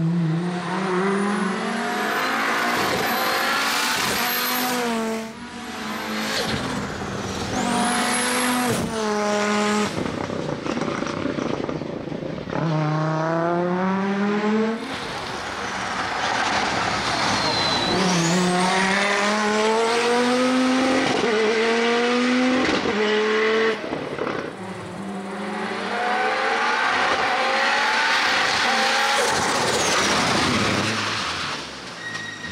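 Audi Sport Quattro S1 E2 rally car's turbocharged five-cylinder engine accelerating hard uphill, its pitch climbing through each gear and dropping suddenly at the upshifts, over several passes. A thin high whistle rises with the revs.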